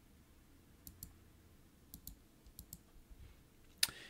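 Faint scattered clicks of computer input as a document is scrolled down the screen, several coming in close pairs, with one sharper click near the end.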